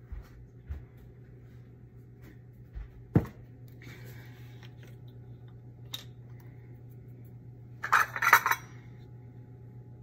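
Kitchen containers and utensils being handled, making light knocks and clinks. There is a sharp clink about three seconds in, and a quick run of clinks, the loudest sound, about eight seconds in. A steady low hum runs underneath.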